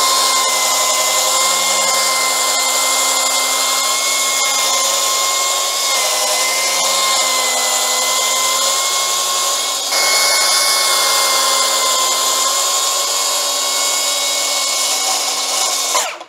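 Milwaukee M18 FUEL cordless plunge saw (M18 FPS55) running at full speed and cutting along its guide rail through a wood-veneered board: a steady high whine with the noise of the blade in the wood, a little louder about ten seconds in. The saw stops right at the end.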